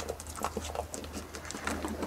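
A goat eating ripe jackfruit flesh: irregular wet smacking and clicking chewing sounds close to the microphone, with a steady low hum underneath.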